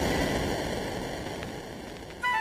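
Background music: the electronic dance track's beat has stopped, leaving a hissing wash that fades away slowly.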